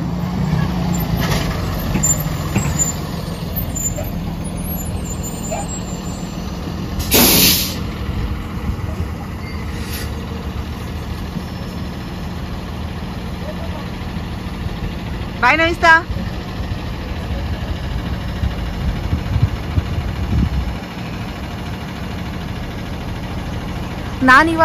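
Yellow school bus engine idling with a steady low rumble, which drops away about 21 seconds in. About seven seconds in comes a short, loud hiss of compressed air from the bus's air system, and a fainter hiss follows a few seconds later.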